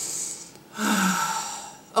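A woman takes a short breath in, then lets out a long breathy sigh that begins a little under a second in and fades away.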